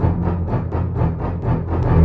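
Channel intro music: deep sustained low notes under a fast, driving beat of about six or seven hits a second.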